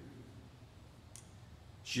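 A pause in a man's speech: quiet room tone with one faint, short click about a second in, and his voice starting again near the end.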